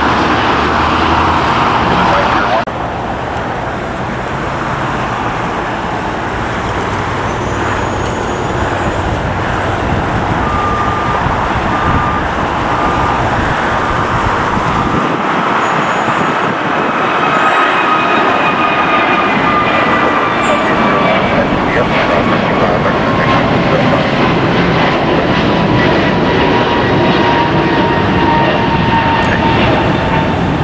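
Jet engines of an Airbus A321neo climbing out at takeoff power: a steady loud rush of jet noise with a thin whine that slowly falls in pitch as the airliner moves away. The first two or three seconds hold a different jet noise that ends abruptly at a cut.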